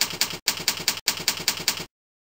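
Typing on a computer keyboard: a steady run of about five keystrokes a second, broken by two short pauses and stopping just before the end.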